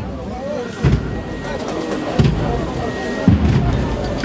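Three deep bass drum beats about a second apart, each with a short ringing tail, over crowd chatter, just after the procession band stops playing.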